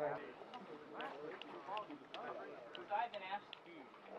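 Faint, distant speech, with a few light clicks.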